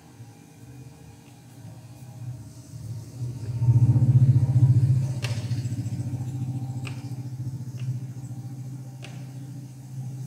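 Low engine rumble that swells about three and a half seconds in and then slowly fades, with a couple of faint clicks.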